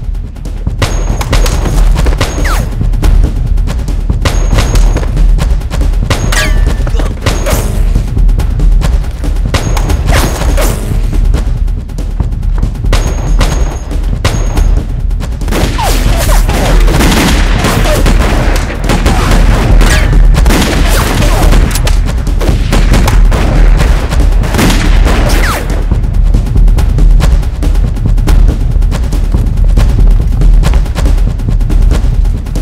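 Battle sound effects: rapid, repeated rifle gunfire, volleys of shots throughout and heaviest in the second half, over a dramatic film music score.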